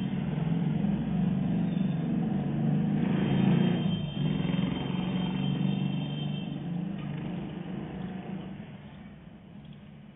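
A motor vehicle's engine running with a steady low drone, which fades away over the last few seconds.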